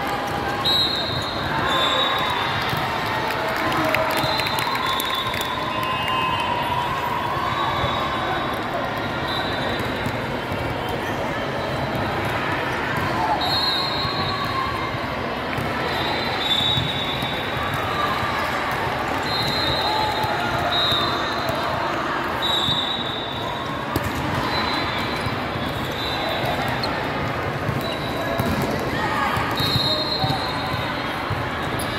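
Volleyball hall ambience: volleyballs being struck and bouncing on a hardwood court amid the steady chatter and calls of players and spectators. Short high-pitched squeaks recur every second or two.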